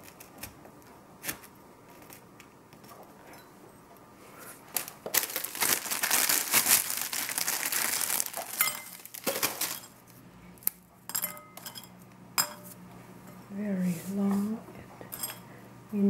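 A plastic bag of ladyfinger biscuits crinkling loudly for about five seconds, starting about four and a half seconds in, while biscuits are pulled out of it. Around it come scattered light clicks and clinks of biscuits, fingers and a spoon against small glass cups and a china plate.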